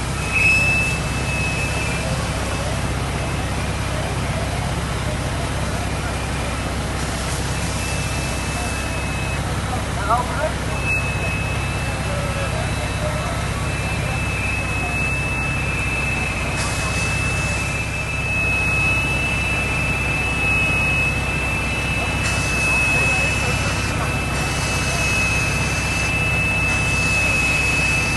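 Fire engines' diesel engines and pumps running steadily: a continuous low drone with a thin, steady high-pitched whine over it.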